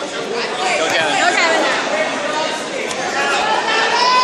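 Crowd chatter: many people talking at once in a large, echoing gym hall.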